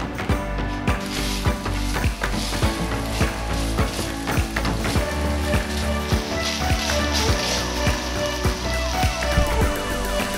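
Bite-sized steak pieces sizzling as they fry in oil in a frying pan, stirred with a wooden spatula, under background music with a steady beat.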